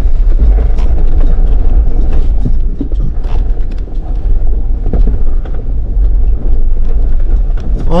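Jeep crawling up a rocky trail: a steady low engine and road rumble with frequent short knocks and crunches of tyres over loose rock.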